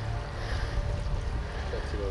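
Wind buffeting the microphone outdoors: a steady low rumble, with a faint voice near the end.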